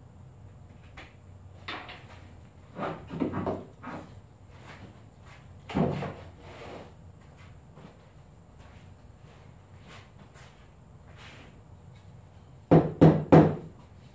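Workshop handling noises: scattered wooden knocks and clunks as the router and a freshly cut plywood ring are moved about on a wooden workbench, with three louder knocks in quick succession near the end. The router motor is off.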